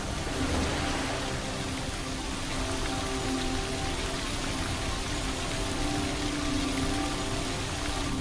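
Ambient intro soundtrack: a steady rain-like hiss with low sustained musical tones held beneath it.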